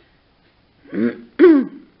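A woman clearing her throat: two short sounds in quick succession about a second in, the second falling in pitch.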